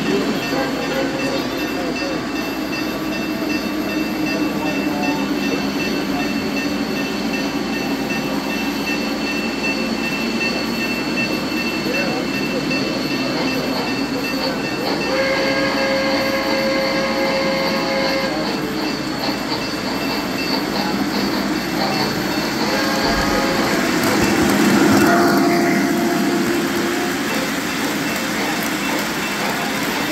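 O-gauge model steam locomotive running on three-rail track with a steady rumble of wheels, its sound system blowing a chime whistle for about three seconds midway, followed by shorter whistle notes later on.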